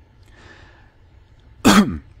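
A man clearing his throat once, a short, loud rasp near the end.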